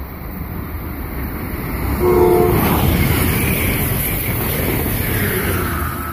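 An Amtrak ACS-64 electric locomotive sounds one short horn blast about two seconds in as it comes up. The train then rushes past loudly with heavy wheel and air noise.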